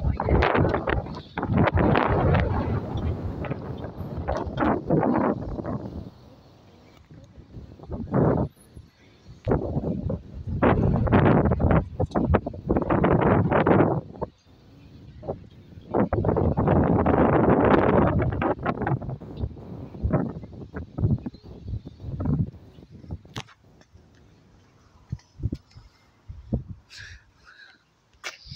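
Wind buffeting the camera microphone in irregular gusts, loud for a few seconds at a time with quieter gaps between.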